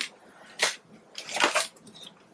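Clear plastic zip-lock bag crinkling as it is handled, in two short bursts, about half a second in and again about a second and a half in.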